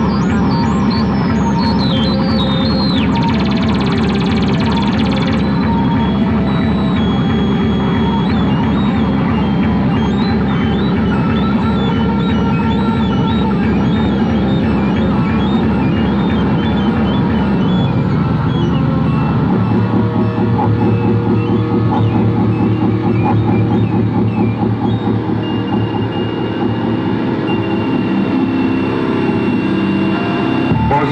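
Live electronic music from synthesizers and electronic gear: a dense, fast pulsing rhythm with high chirping blips, changing about eighteen seconds in to a heavy low drone that pulses rapidly.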